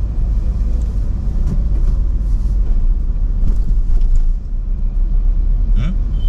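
Car interior noise while driving: a steady low rumble of the engine and tyres on the road, heard from inside the cabin.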